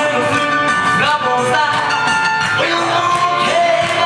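Live male singer performing a rock-and-roll number, accompanying himself on an electronic keyboard piano over a steady drum-machine beat, amplified through a PA.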